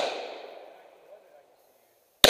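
The echo of a pistol shot rolling across an outdoor range, fading away over about a second and a half, then quiet until the next shot.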